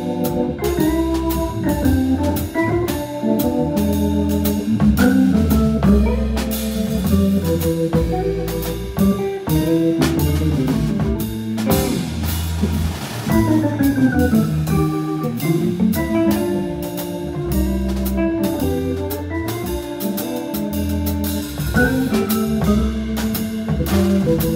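Hammond B3 organ playing sustained chords over a low bass line, with a drum kit keeping steady time with even cymbal strokes, in a live jazz organ combo.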